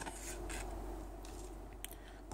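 Faint rustling of paper and card inserts being handled, with a small click shortly before the end.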